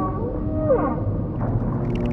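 Whale calls: long drawn-out tones at several pitches, with a short downward-sliding call about two thirds of a second in, over a steady low rumble.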